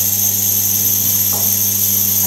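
Atmospheric plasma pen running, giving a steady electrical buzz with a high-pitched whine over it.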